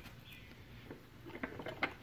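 Quiet room tone with a few faint, sharp clicks in the second half, light handling noise at the workbench.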